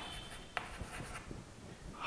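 Chalk writing on a chalkboard: faint scratching with a few light taps.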